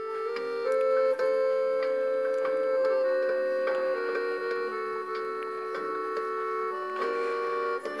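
Background music of slow, held keyboard chords, the notes sustained and changing every second or few.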